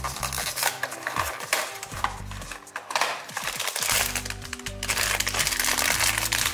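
Paper and foil packaging handled close up: a cardboard blind box being opened, then a foil wrapper crinkling in irregular crackles as it is pulled open, over background music.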